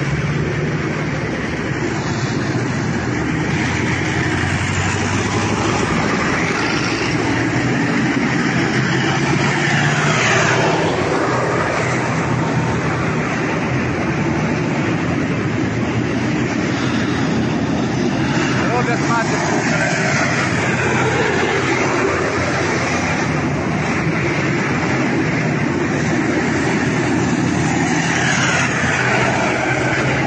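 A column of military armoured vehicles driving past at close range, their engines and running gear making a loud, continuous noise. The sound swells and shifts three times as vehicles go by in turn.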